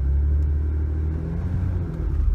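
Ford Explorer's 4.0-litre OHV V6 running at low revs under light load in reverse as the truck backs out, heard from inside the cabin as a steady low rumble.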